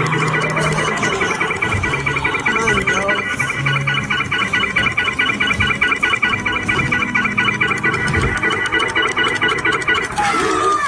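Dark-ride soundtrack: electronic music and sound effects with a rapid, continuous high pulsing, several beats a second, over lower tones that come and go.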